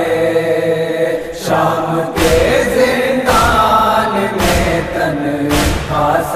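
Voices holding a wordless chanted line of an Urdu nauha (mourning lament). About two seconds in, a heavy beat joins and strikes roughly once a second.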